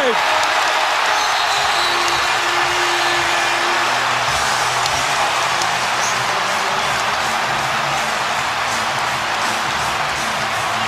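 Basketball arena crowd cheering and applauding loudly and steadily for a game-tying three-pointer.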